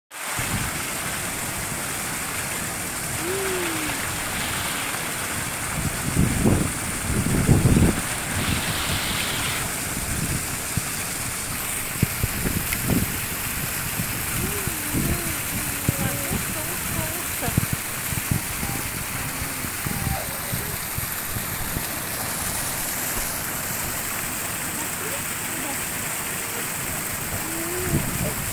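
Small waterfall splashing steadily over stone ledges into a shallow pool. Faint voices come and go in the background, and a few louder low rumbles come around six to eight seconds in.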